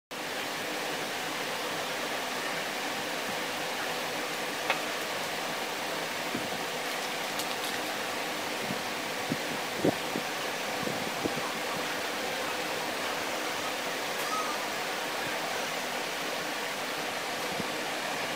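Steady hiss of background noise, with a few light clicks and taps near the middle as hands handle a glass lens and small PVC pipe pieces on a table.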